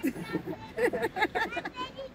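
Speech: people talking in conversation.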